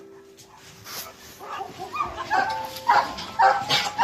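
Dogs giving short barks and yips, several in quick succession from about two seconds in.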